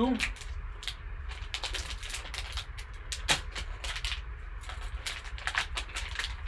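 Foil card-pack wrapper crinkling and crackling as it is torn open, in irregular crisp clicks, with one sharper snap about three seconds in.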